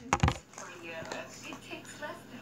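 Two quick thumps close to the microphone, from a hand and object knocking against the laptop or webcam, in the first half-second. After them, faint speech from a video playing in the background.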